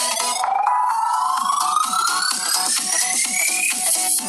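Electronic dance music played through a Poco F2 Pro smartphone's loudspeaker. A long synth sweep rises steadily in pitch and cuts off just before the end, over a repeating pulsing beat.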